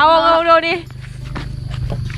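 A woman's voice speaking a short phrase in the first second, over a steady low hum; the rest is quieter, with a few faint ticks.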